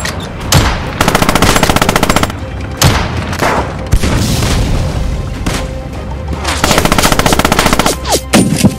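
Battle sound effects: two long machine-gun bursts of rapid, evenly spaced shots, about a second in and again near the end, with single rifle shots between them.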